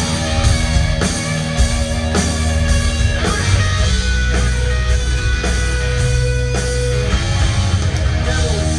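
Live rock band playing an instrumental passage: distorted electric guitars holding notes over bass and drums, with a steady beat of about two drum hits a second.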